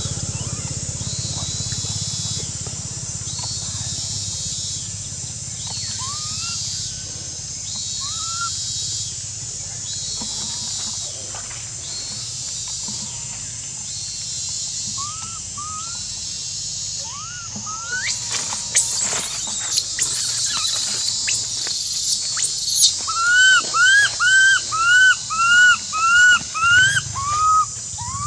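Baby macaque crying: scattered short rising squeaks at first, then, about two-thirds of the way in, a loud run of rapid arched cries, about two a second. A steady high-pitched background drone runs underneath.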